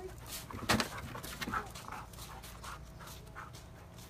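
A dog panting, short quick breaths at about two to three a second, the strongest about a second in.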